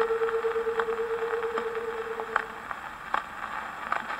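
Surface noise of a 78 rpm shellac record on an acoustic Victrola phonograph after the song ends: steady hiss and crackle with a sharp click about every 0.8 s, once per turn of the disc. A single held final note rings faintly under it and fades out about two-thirds of the way through.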